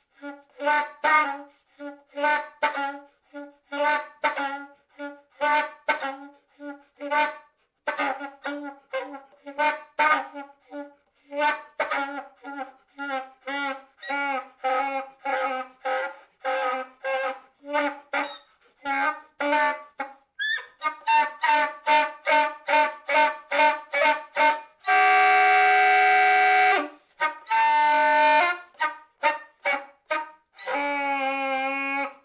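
Solo soprano saxophone playing short, detached notes, two or three a second, with gaps between them. About two-thirds through it plays a quicker run of repeated notes, then holds one long, loud note near the end before returning to short notes.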